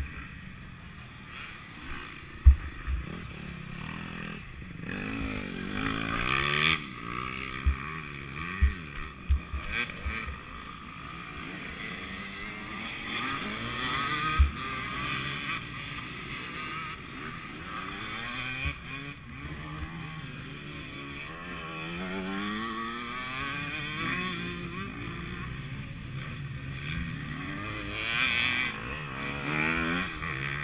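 KTM 150 SX two-stroke motocross engine running at an uneven idle, its pitch wavering up and down, while the bike lies on its side and is hauled upright. Sharp knocks from handling the downed bike come a few times, the loudest about two seconds in.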